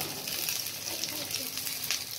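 Potato tikkis frying in shallow oil on a flat pan, with a steady sizzle.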